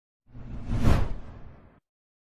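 A whoosh sound effect with a deep low rumble, swelling to a peak about a second in and then fading away.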